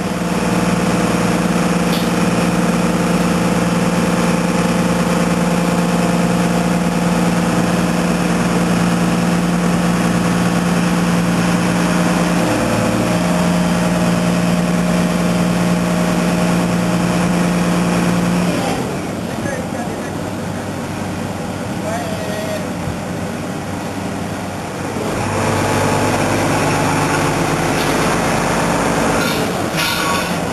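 Heavy diesel engine running steadily at idle. The note shifts briefly about twelve seconds in, drops away a little past the middle, and comes back with a lower note about five seconds before the end.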